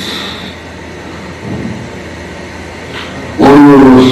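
A pause in a man's preaching filled with steady background noise, with no voice in it; his voice comes back loudly about three and a half seconds in.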